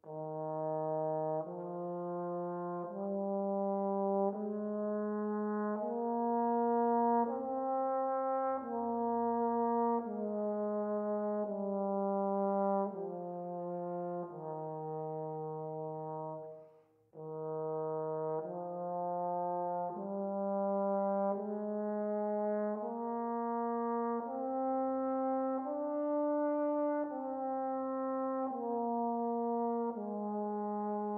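Tenor trombone playing a slow legato warm-up exercise for breath control: smooth, connected notes of about a second each, stepping up and then back down in the middle register. It plays two phrases, with a short break for breath about halfway through.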